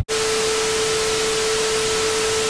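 TV static sound effect: an even hiss of white noise with a steady single tone running under it, which starts abruptly and holds level, as a colour-bars glitch transition.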